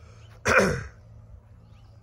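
A person coughs once, loudly and briefly, about half a second in.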